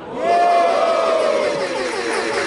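Rap-battle crowd reacting with a long drawn-out 'ooh', one voice standing out as a held note whose pitch slides slowly down, over a dense hubbub of many voices.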